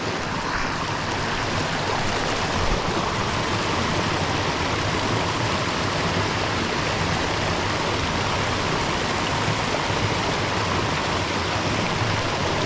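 Steady rushing of a mountain brook as a small cascade pours over rock ledges into a plunge pool.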